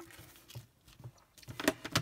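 Quiet handling of a paper card on a craft mat, with a few soft rustles and two sharp taps in the second half, the last near the end.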